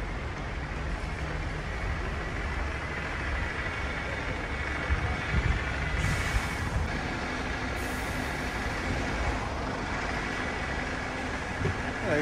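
Street traffic with a heavy vehicle's engine running nearby, a steady low sound, and two short hisses about six and eight seconds in, like air-brake releases.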